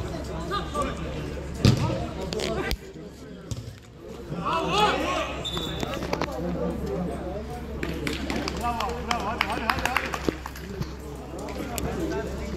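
A football kicked on an artificial-turf pitch, a sharp thud about two seconds in, with players calling and shouting across the pitch.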